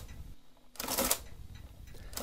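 Olivetti Multisumma 20 electro-mechanical adding machine cycling as its minus key is pressed again and again: each press gives a short clatter of the mechanism and its printer as it subtracts and prints one line. One cycle falls about a second in, with the end of the previous one at the very start. This is division by repeated subtraction, running until the negative flag appears.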